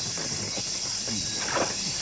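A steady, high-pitched insect chorus like cicadas or crickets drones throughout, the sound of a hot summer day. A faint call rises over it about one and a half seconds in.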